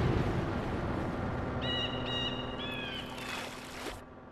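Animated sound effects: a hissing puff of noise for a magic cloud of smoke fades away. A few short, high bird chirps sound midway. A rising whoosh then cuts off suddenly at the end.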